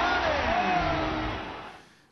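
Television advert soundtrack: music with several overlapping voices, fading out over the last second.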